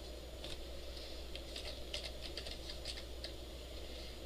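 Computer keyboard being typed on: an uneven run of quick key clicks starting about half a second in, over a steady low hum.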